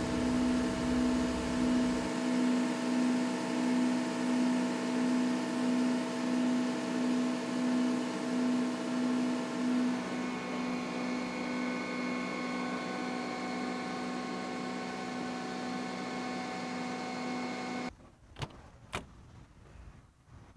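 Aerial ladder machinery of a 2012 Pierce Arrow XT tiller's 100-foot steel aerial running as the ladder is worked from the control levers: a steady mechanical hum with a slow pulsing. Its tone changes about halfway through, and it cuts off shortly before the end, leaving a couple of faint clicks.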